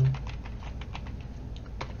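Computer keyboard keys clicking as a word is typed, a quick, uneven run of keystrokes.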